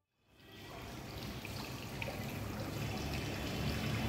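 Water trickling and splashing in a small courtyard fountain, fading in after a brief silence and growing steadily louder.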